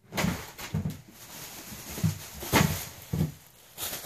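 A thin plastic shopping bag rustling and crinkling as it is lifted and handled, with about half a dozen sharper crackles.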